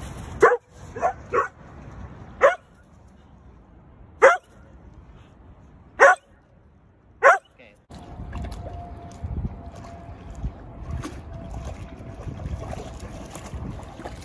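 A dog barking seven times in short single barks: three in quick succession about half a second in, then four more spaced one to two seconds apart. After about 8 s, a steady low rush of noise takes over.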